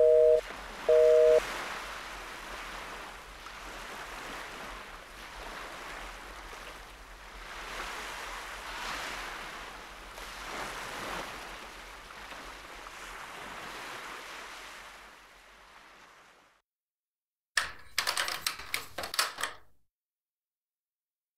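A phone's busy tone beeping twice as the call ends, then waves washing on the shore, swelling and ebbing, until the sound cuts out. After a second of silence, a quick cluster of clicks and rattles: a door latch being worked and the door opened.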